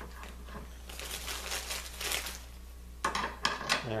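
Plastic bag crinkling in one hand while small steel drill-guide bushings are handled and fitted into an aluminium dowelling jig, with a few sharp clicks near the end.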